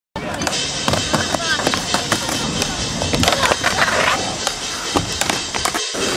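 Skateboard on a wooden ramp: wheels rolling with repeated clacks and knocks of the board, with voices over it. The sound cuts off briefly just before the end.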